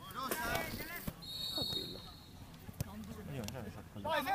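Live pitch sound of a five-a-side football match: players' voices calling out over the play, with a few sharp knocks of the ball being kicked and a short, steady high whistle about a second in.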